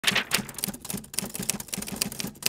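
Typewriter sound effect: a quick, uneven run of key clacks, several a second, as title text types onto the screen.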